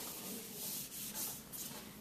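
A whiteboard eraser wiping across a whiteboard in repeated strokes, a soft rubbing hiss.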